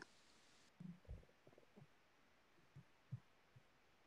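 Near silence: room tone on an online call, with a few faint, brief low sounds.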